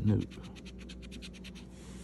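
A coin scratching the latex coating off a scratch-off lottery ticket in quick back-and-forth strokes, roughly eight a second, ending in a brief continuous scrape near the end.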